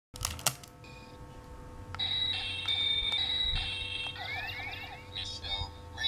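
DX Mystic Morpher toy (US version) playing its electronic sound effects. A couple of sharp clicks come first, then beeping tones that step in pitch from about two seconds in, a quick run of rising glides, and a recorded voice near the end.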